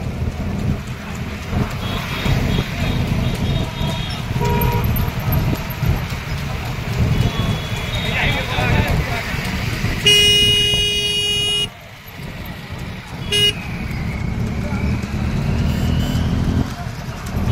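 A crowd of motorcycles running together in a close pack, with a vehicle horn sounding for over a second about ten seconds in and a short toot a couple of seconds later.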